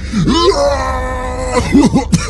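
A person's voice rises in a whoop into a long, steady wailing note held for about a second, then breaks into short laughing syllables near the end.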